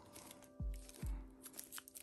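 Quiet background music holding steady sustained tones, with two soft low thumps about half a second and a second in as a shrink-wrapped album is handled.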